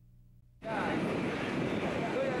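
Near silence, then about half a second in a sudden cut to loud, steady noise from a small passenger plane's engine running on an airport apron, with people's voices over it.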